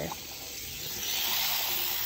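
Hot water pouring into a ceramic bowl of olive oil and dish soap, a steady splashing hiss that builds as the bowl fills and foams up, then stops abruptly near the end.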